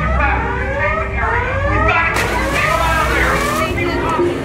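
An alarm siren on the Jurassic Park River Adventure ride, sounding repeated rising whoops that overlap one another, over a steady low rumble of ride machinery and water.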